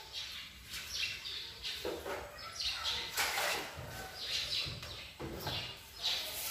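A brush scrubbing a kitchen countertop in short, irregular strokes.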